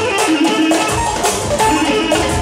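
Live band dance music: a clarinet carrying the melody over a steady drum beat.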